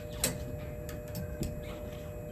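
A few light clicks and taps of a clothes hanger being lifted off a metal garment rail, the sharpest about a quarter second in, over a faint steady hum.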